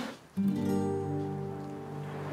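Background score: an acoustic guitar chord strummed about a third of a second in, ringing on and slowly fading.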